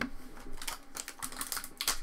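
Wrapper of a trading-card pack crinkling as it is picked up and handled, a run of small quick crackles that grows busier near the end.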